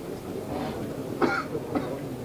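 A short cough about a second in, followed by a smaller one, over low background noise.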